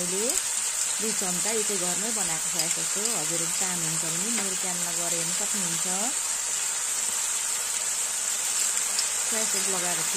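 Chopped onion, capsicum and tomato sizzling in oil in a wok: a steady frying hiss.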